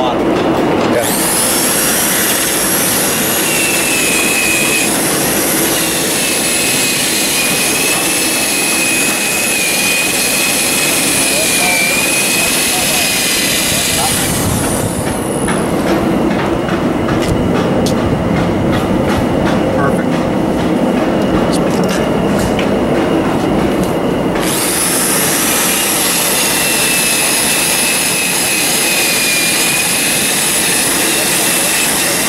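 Corded electric drill spinning a wire cup brush against a metal roof drain bowl, scouring off rust: a high, steady motor whine over a rough scrape. For about ten seconds in the middle the whine drops out, leaving a rattling scrape, and it comes back near the end.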